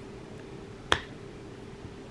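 One sharp click about a second in, over quiet room tone with a faint steady hum.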